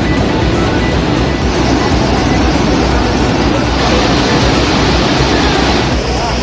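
Steady rush of a flooded rocky stream in spate, under a news bulletin's background music.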